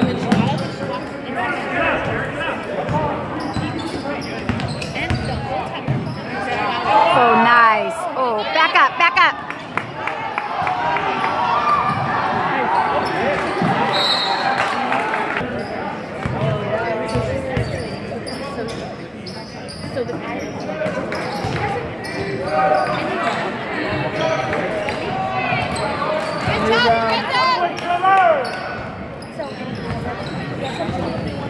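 A basketball being dribbled and bounced on a hardwood gym floor during play, with knocks throughout. Voices from the players and crowd echo in the large hall, loudest about a quarter of the way in and again near the end.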